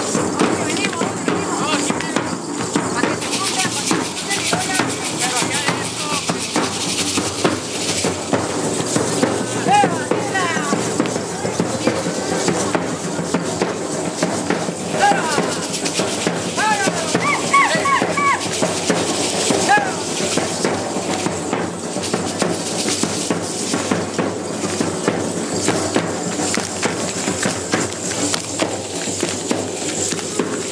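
Matachines dance percussion: a drum beat with the dancers' hand rattles and the shaking of their cane-fringed skirts as they step, with a continuous clatter of short strokes. Voices call out now and then around the middle.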